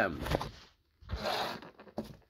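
A short scraping rustle of handling noise, about a second in, as the phone camera is moved across the table to the next specimen, then a small click at the end.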